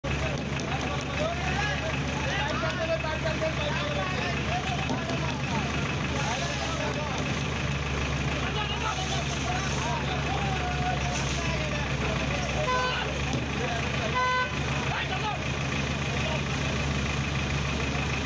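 A vehicle engine running steadily under the voices of people shouting and talking. About two-thirds of the way through, a vehicle horn gives two short toots about a second and a half apart.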